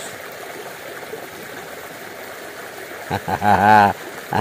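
Muddy creek water flowing steadily past a sandbag dam, an even rushing noise; a voice comes in near the end.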